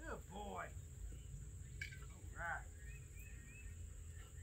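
Quiet outdoor ambience: a steady high-pitched insect drone, with two short gliding calls, one at the start and one about two and a half seconds in, and a few faint bird chirps near the end.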